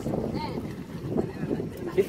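Wind buffeting the microphone, with voices of people nearby.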